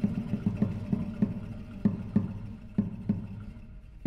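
Classical guitar quartet playing soft, short plucked notes, about two or three a second, growing quieter.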